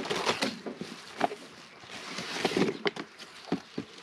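Plastic wrapping and a cardboard box rustling and crinkling as a packaged incubator is lifted out by hand, with a few sharp clicks and knocks.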